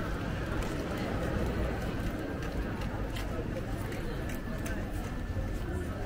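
Busy street ambience: passers-by talking, footsteps clicking on the paving, and a low rumble of traffic.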